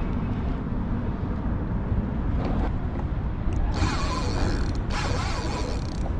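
Fishing reel ratcheting mechanically under the pull of a hooked striped bass, loudest for about a second midway, over a steady low rumble.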